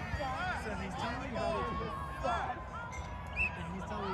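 Overlapping voices of players and sideline spectators calling out across an outdoor soccer field, with no clear words. A long, steady, held tone sounds from about a third of the way in to the end.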